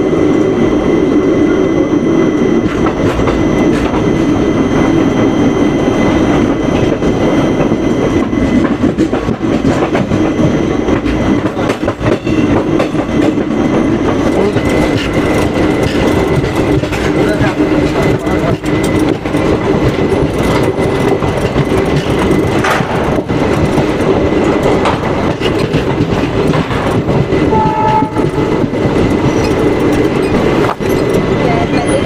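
Tapovan Express passenger train running along the line, heard from an open coach doorway: a steady rumble and clatter of the coaches' wheels on the rails, with frequent clicks over rail joints.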